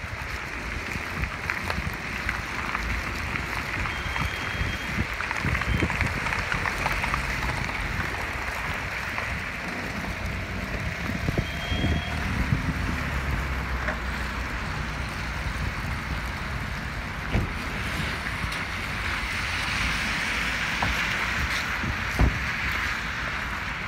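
Wind buffeting the phone's microphone with an uneven rumble, over a steady hiss of rain falling on wet asphalt.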